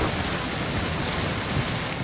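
Cartoon sound effect of billowing vapour: a steady rushing hiss that eases off near the end.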